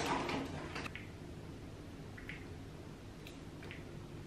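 Quiet room tone with a few faint, brief clicks from a makeup bottle being handled while foundation is dotted onto the face.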